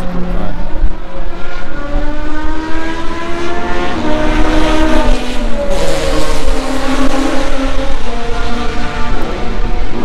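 Race car engines at high revs on the track, climbing in pitch through the gears, with a drop in pitch about four seconds in and another climb from around six seconds.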